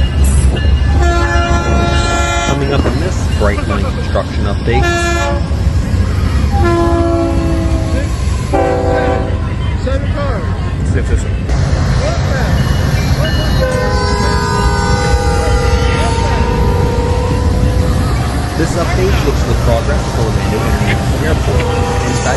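Train horns sounding several short blasts and one long blast of about four seconds, over a heavy, steady rumble of moving trains, with voices mixed in.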